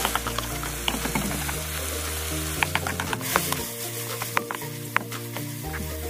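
Ground meat with diced carrot, onion and celery sizzling in a wok, stirred with a spatula that clicks and scrapes against the pan every so often. Background music plays under it.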